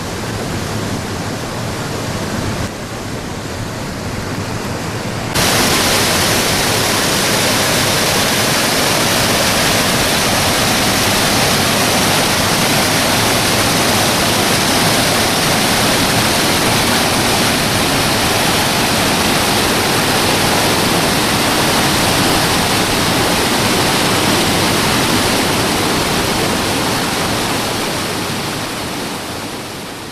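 Water pouring over the gates of a stepped stone canal lock and rushing down the chamber: a loud, steady rush of falling water. It jumps louder about five seconds in and eases a little near the end.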